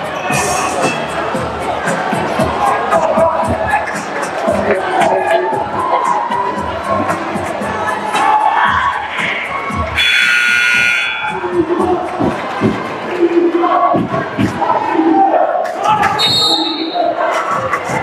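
Gymnasium crowd noise with music playing. About ten seconds in, the arena horn sounds for about a second, marking the end of the timeout. After it comes a basketball bouncing on the hardwood floor.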